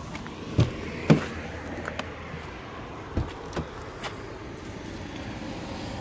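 A few short knocks and bumps, the loudest about a second in, as someone climbs into a car's front seat and moves about the cabin, over steady background noise.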